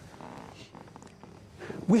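A pause in a man's speech: faint, steady background noise with no distinct event, then his voice starts again near the end.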